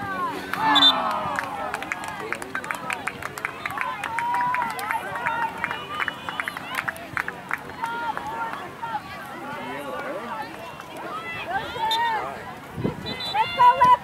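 Indistinct voices of spectators and players at a soccer match, calling out and chattering across the field, with louder shouts about a second in and near the end.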